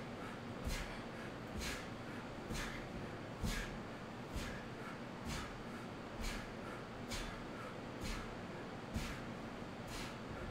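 Sharp breaths out through the nose, about one a second in a steady rhythm, in time with repeated leg raises, over a steady fan hum.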